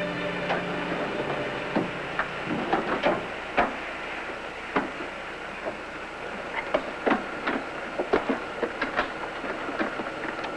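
Steady hiss with irregular sharp clicks and clunks as glass oxygen helmets and their hoses are handled and fitted over a head.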